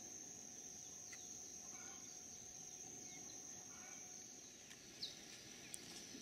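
Faint outdoor ambience: a steady high-pitched insect drone, with a brief chirp near the end.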